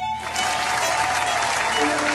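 A crowd applauding, with a few held musical notes underneath.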